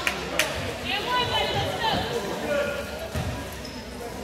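Spectators' and players' voices in a gym, with a basketball bouncing on the hardwood court a few times.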